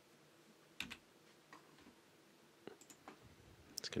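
A few faint, irregularly spaced clicks from a computer keyboard and mouse, the loudest a quick pair about a second in.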